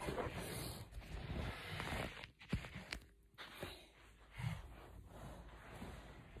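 Soft rustling and shuffling from a person moving about on an exercise mat, with a few sharp clicks near the middle and a soft thud a little later.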